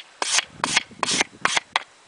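A Nicholson file cleaner, a short stiff steel-wire brush, scrubbed across the teeth of a steel file to clear metal filings out of them: about five quick scraping strokes.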